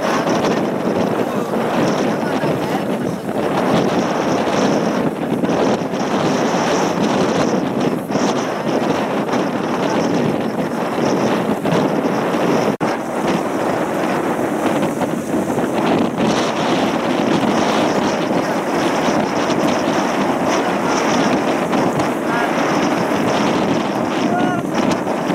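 Strong wind blowing across the microphone, a steady rushing noise, with choppy lake water, broken by one brief dip about thirteen seconds in.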